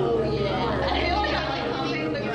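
Several voices chattering indistinctly, no clear words.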